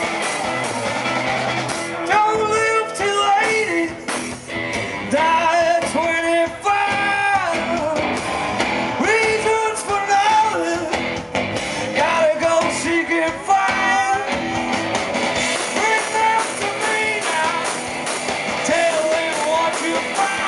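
Rock band playing live through PA speakers: amplified electric guitars, bass and drums. From about two seconds in, a pitched melody line rises and falls over the band.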